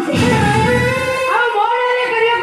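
A singer holding long notes that glide up and down over musical accompaniment, a song from an Odia Danda Nacha stage performance, with a low rumble in the first second.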